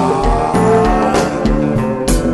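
Konpa band playing live, with a steady kick drum and bass under the music and a falling glide in pitch through the first second.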